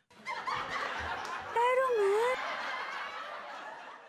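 Canned sitcom audience laughter: a crowd laughing that starts just after the line ends, grows louder for about a second from a second and a half in, where one voice rises and falls above the rest, then tapers off.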